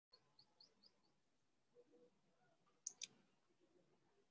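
Near silence, with two faint clicks in quick succession about three seconds in.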